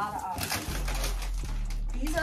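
Plastic garment bags and a cardboard box rustling and crinkling as packages are unpacked by hand, with a brief voice sound near the start.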